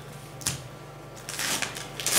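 Paper rustling close to the microphone as a sealed envelope is worked open, with a sharp click about half a second in and a louder rustle near the end.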